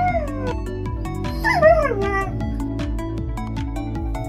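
Background music with a steady beat, with two falling, animal-like cries laid over it: one right at the start and one about a second and a half in.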